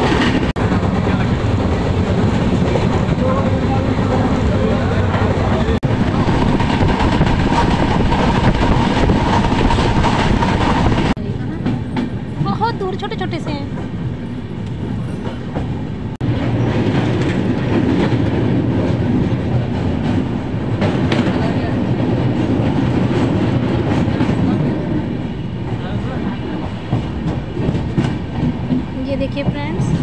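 Passenger train running at speed, heard from inside a carriage: a loud, continuous rumble with wheels clacking over the rails. The sound drops suddenly about eleven seconds in and rises again about five seconds later.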